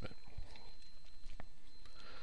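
A few faint, sharp clicks over a steady background hiss, typical of a computer mouse being handled and clicked.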